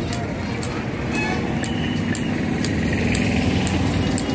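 Busy street ambience: a vehicle engine running steadily under people's voices, with a few sharp clicks.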